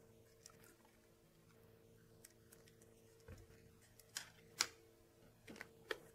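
Near silence with faint handling noise: a few light clicks and taps as a one-click fiber port cleaner and handheld fiber optic test instruments are handled, the two sharpest clicks close together about four seconds in. A faint steady hum underneath.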